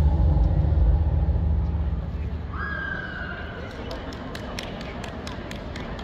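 Deep, bass-heavy music dies away about two seconds in, leaving the murmur of a crowd in a large indoor hall. From about halfway, sharp clicking footsteps on a hard floor run on, with a brief single tone just before they start.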